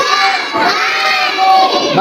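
A group of children chanting loudly in unison, holding long drawn-out syllables as they recite an Arabic reading drill aloud.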